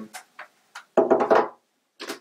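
Hollow white uPVC shutter profiles knocking against each other as a bay pole is fitted over an L frame: a few light clicks, then a louder clatter about a second in.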